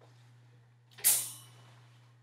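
A sudden, loud scraping rustle close to the microphone about a second in, fading within half a second, over a steady low hum. It is typical of handling noise as a charger is hooked up to a laptop.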